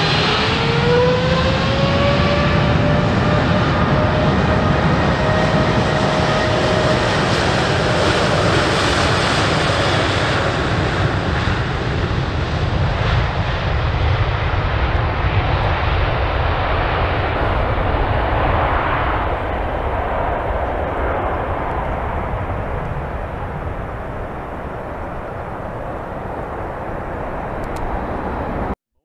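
Boeing 777X's twin GE9X turbofan engines at takeoff thrust: a loud jet rush with a fan whine that rises in pitch over the first few seconds as the engines spool up. As the jet climbs away, the sound fades gradually and grows duller.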